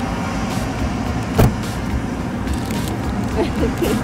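Steady rumble of outdoor traffic noise, with one sharp click about a second and a half in.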